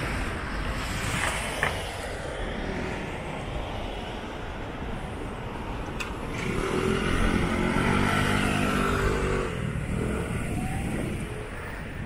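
Street traffic noise, with a motor scooter passing close by from about six and a half seconds in: its engine tone grows louder for a couple of seconds, then fades.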